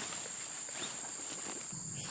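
Insects chirring in one steady, unbroken high-pitched drone.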